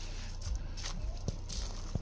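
A few soft footsteps on dry leaf and pine-needle litter, about one every 0.7 s, over a low steady rumble.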